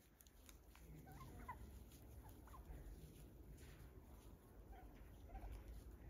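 A flock of domestic turkeys foraging, giving faint, scattered short calls, some of them sliding up in pitch.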